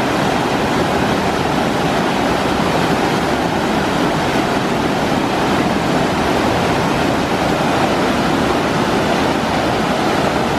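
Whitewater rapids on a rocky mountain river: a steady, loud rush of water pouring over boulders.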